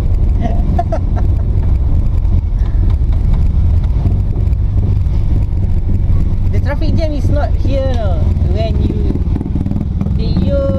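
Steady low rumble of a small van's engine and road noise, heard from inside the cabin while driving.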